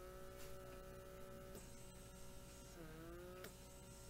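Battery pore-vacuum blackhead remover running on its medium setting: a faint, steady motor whine. Its pitch sags and recovers about three seconds in, as the suction nozzle is worked against the skin.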